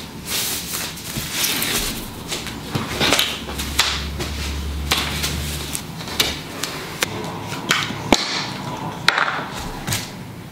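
A large framed mirror being handled and laid down on a protective floor covering: rustling swishes with a series of sharp knocks and clicks, most of them in the second half.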